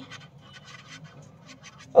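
Felt-tip marker scratching on paper, a quiet run of short, irregular pen strokes as a word is written.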